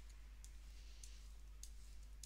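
Faint, short strokes of a board eraser rubbing marker off a wipe-clean board: three quick scrubbing clicks, evenly spaced about half a second apart, over a low steady electrical hum.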